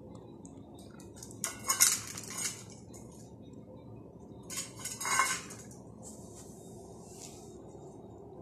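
A stainless steel cat bowl clattering and scraping on a hard stone floor as kittens push it around, in two bursts: one about a second and a half in, the loudest, and another around five seconds in.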